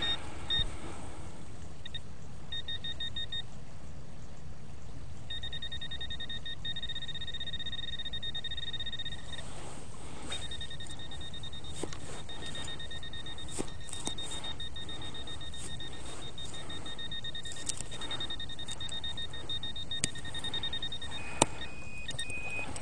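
A handheld metal-detecting pinpointer, a RicoMax, beeping rapidly at one steady pitch in long runs that stop and start, the sign that its tip is near a buried metal target in the dig hole. Short knocks and scrapes of digging in soil come between the beeps.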